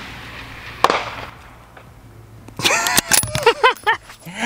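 The echo of a 6.5 Creedmoor bolt-action rifle shot dying away, then about a second in a single sharp metallic clack. Near the end a man's excited, wordless exclaiming.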